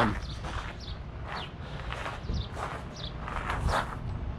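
Footsteps crunching on gravel, about two steps a second.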